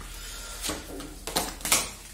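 Tarot cards being handled and laid on a table: three short, sharp card clicks and slaps in the second half.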